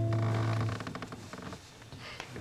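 A sustained instrument chord rings on and is cut off under a second in, followed by faint clicks and rustling.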